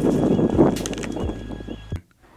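A rustling scuffle of football pads and bodies as a ball carrier is tackled and rolled to the turf. It is a burst of noise that fades over about a second, with a few knocks in the middle.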